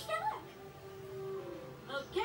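A cartoon character's brief sliding, meow-like vocal sound, then a held tone, with soft background music. It comes from a television speaker.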